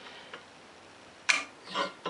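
Vise-grip locking pliers being clamped onto an acrylic lens on a drill press table: a faint tick, then one sharp metallic click about a second and a half in, followed by a softer short rattle.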